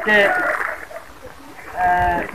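A man's voice drawing out one syllable, then a pause of about a second before his speech resumes near the end.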